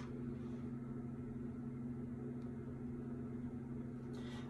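A steady low hum under quiet room noise, with no distinct knocks or clicks.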